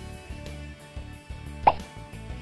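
Background music with steady low tones, and one short pop about three-quarters of the way through, the loudest sound.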